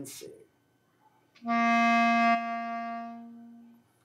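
Clarinet playing a single held low C in the chalumeau register, with the left thumb and three fingers down, as a beginner's exercise note. It starts about a second and a half in, sounds steady and full for about a second, then fades away before the end.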